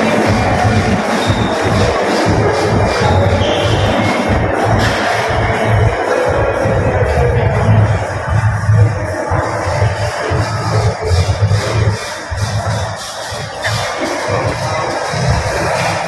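Electronic music with a steady bass beat playing in a large domed hall.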